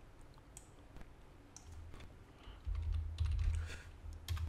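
Faint typing on a computer keyboard, scattered light key clicks, as a name is typed into a material's name field. A low hum comes in about two-thirds of the way through.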